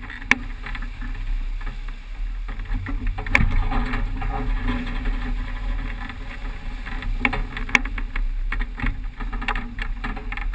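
Rushing water along the hull of a racing sailboat sailing fast in strong wind, with wind rumbling on the microphone. Scattered sharp knocks and clicks come from the boat's gear, a few of them near the end.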